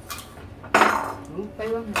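Metal spoon knocking against ceramic dishes: a small clink at the start, then one loud clatter a little under a second in that rings briefly.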